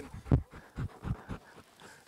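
A dog panting in short, uneven breaths close to the microphone, with one loud bump about a third of a second in.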